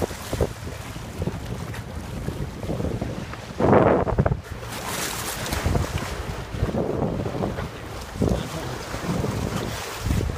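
Wind buffeting the phone's microphone over water rushing past the hull of a moving boat, with a louder burst about four seconds in.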